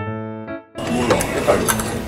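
A short editing music cue of a few clean notes cuts off under a second in. It gives way to table clatter of cutlery and dishes as people eat.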